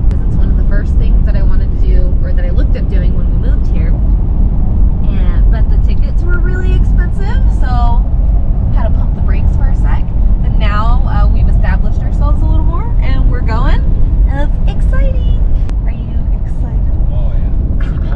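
Wind buffeting and road rumble in the cabin of a Toyota 4Runner driving with the windows open, a heavy steady noise throughout, with voices over it.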